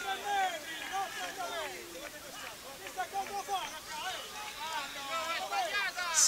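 Several voices calling and talking across an open football pitch, overlapping, heard at a distance from the field microphone.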